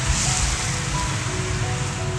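Soft background music, a slow melody of held notes, over the steady hiss of rain and tyres on a wet road inside a moving car, with a low rumble underneath.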